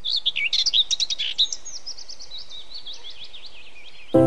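Birds chirping: a dense flurry of quick high chirps, then a steadier run of repeated short down-slurred notes, over a faint background hiss.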